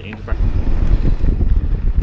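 Wind buffeting an action camera's microphone, with tyre rumble from a mountain bike rolling down a dirt track. It starts suddenly about a third of a second in and runs as a loud, uneven low rumble.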